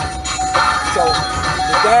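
Music with a steady, evenly repeating beat pattern and short sliding melodic notes; a man says a single word near the end.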